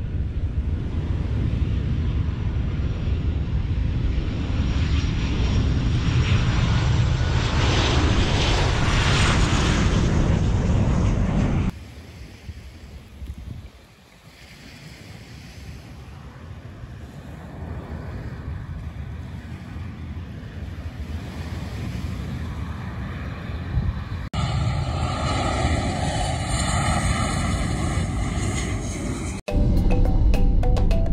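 Airliner engines passing low over the shore, with wind and surf; the sound swells to its loudest about eight to ten seconds in, then cuts off sharply. A quieter stretch follows in which the aircraft sound builds again, and music begins just before the end.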